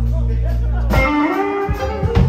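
Live electric blues band playing: an electric guitar lead over held bass notes and drums, with a note bending upward about halfway through.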